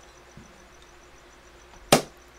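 Quiet room tone broken near the end by one sharp, loud knock that dies away quickly.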